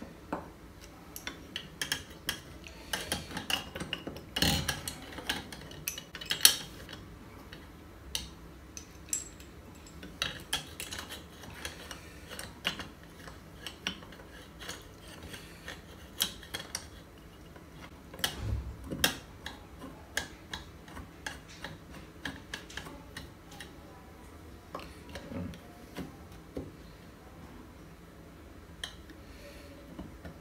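Metal parts of a Stanley hand plane being handled and fitted: irregular small clicks, taps and scrapes as the blade and lever cap are seated and adjusted on the cast iron body, with a few louder knocks among them.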